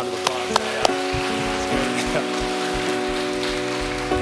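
Congregation applauding, with a steady held chord of background music underneath.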